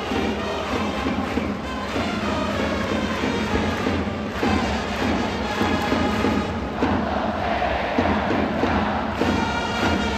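Baseball cheering section in a stadium singing a player's cheer song in unison to trumpets and drums, with a steady beat and flags waving. The crowd's voices and brass fill the dome with reverberation.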